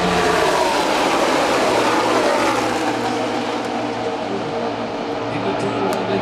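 A large pack of NASCAR Cup Series stock cars with V8 engines passing the grandstand at full race speed. Their engine note falls in pitch as they go by over the first half, then eases slightly as the pack heads into the turn.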